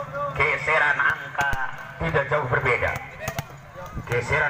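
A man's commentary voice, with a few sharp thuds of a volleyball bounced on the hard court before a serve, about a second in and again near the end.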